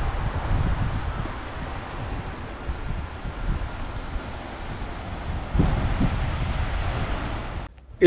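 Wind buffeting an outdoor microphone: a steady, unpitched low rumble with hiss above it. It grows louder about five and a half seconds in and cuts off just before the end.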